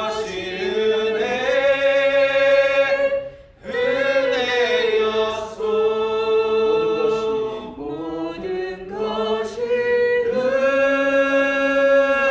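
Worship team singing a praise song, with long held notes and a short break between phrases about three and a half seconds in.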